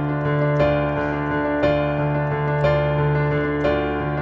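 Digital piano playing a D minor figure: a held low bass note under repeated right-hand notes in thirds, accented about once a second. The thumbs hammer the repeated notes to imitate war drums while the pinky keeps the pulse.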